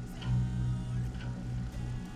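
A low string on a seven-string electric guitar, plucked about a quarter second in and left to ring as one steady note, being tuned to B after a saddle adjustment for intonation.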